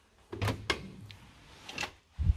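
Hotel room door latch and handle clicking as the door is opened: two sharp clicks with a low rumble about half a second in, and another click near the end.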